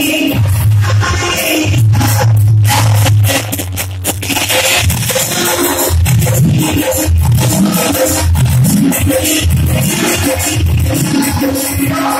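Phagua, Holi folk music, playing loud and continuous with dense, rapid percussion strokes.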